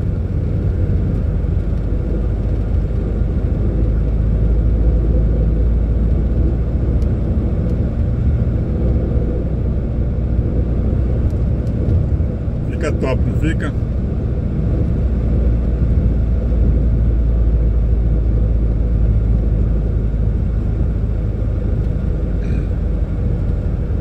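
Truck cab interior while cruising on a highway: a steady low rumble of the diesel engine and road noise.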